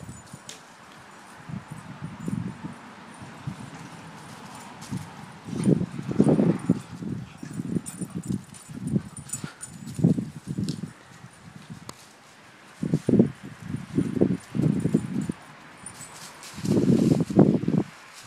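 Irregular runs of low thuds from footsteps on grass and dry fallen leaves, with light rustling of the leaves between them.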